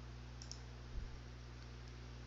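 Computer mouse clicking, a quick pair of sharp clicks about half a second in, followed by a louder low thump about a second in and a couple of faint ticks. A steady low hum and hiss lie underneath.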